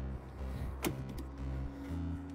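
A single sharp click as the robotaxi's flush pop-out door handle is pulled and the rear door unlatches and opens. Steady background music runs underneath.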